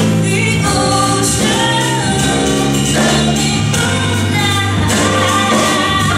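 Live jazz band playing: two women's voices singing together over acoustic piano, electric bass and drums, with a steady cymbal beat.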